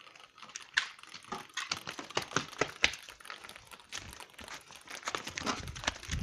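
Six ping pong balls bouncing and rolling down a sloping paved tile surface: a rapid, irregular run of light, sharp clicks.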